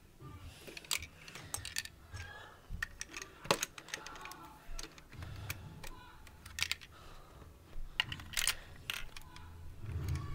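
Plastic Lego bricks clicking and clattering in irregular taps as a Lego machine is handled and its pieces pressed and fitted, with a few dull bumps of handling.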